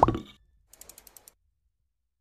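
Logo-animation sound effects: a short rising sweep that fades out quickly, then a quick run of about seven faint clicks, roughly ten a second.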